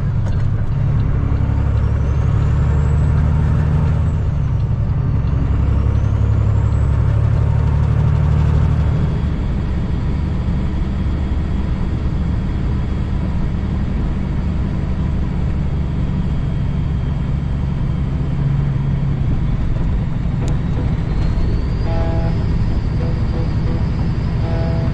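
Cummins ISX diesel engine of a 2008 Kenworth W900L semi running steadily as the truck drives down the highway, getting a little quieter about nine seconds in.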